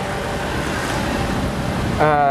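A steady, wind-like rushing noise that swells slightly.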